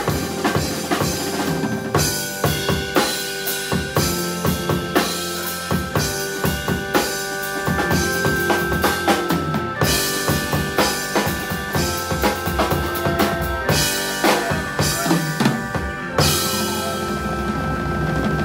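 Jazz drummer on a Yamaha drum kit playing busy snare and bass-drum figures over held Hammond B3 organ chords that change every couple of seconds. Near the end a loud cymbal crash rings on under a sustained organ chord.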